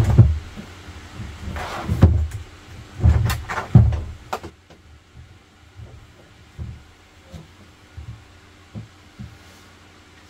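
Bumps and scrapes of a plastic freshwater tank being shifted and pushed into its floor compartment by hand: a few loud knocks in the first four seconds, then only light taps.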